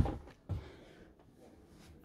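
A single light knock about half a second in as the slatted wooden bed base is handled, otherwise quiet room tone.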